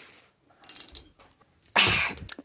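Handling noise as a plush toy is moved about close to the phone's microphone. There are a few light clicks about halfway through, then a short, loud rustle near the end.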